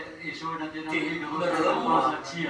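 Speech only: people talking in a small room.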